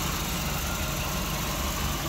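Nissan Micra's 1.2-litre naturally aspirated four-cylinder petrol engine idling steadily, heard with the bonnet open.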